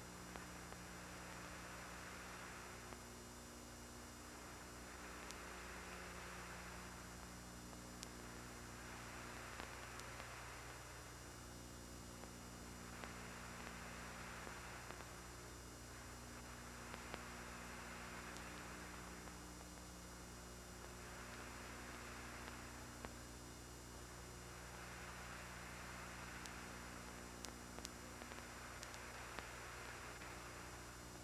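Faint steady electrical hum with hiss on an idle audio line, the hiss swelling and fading about every four seconds, with a few faint clicks.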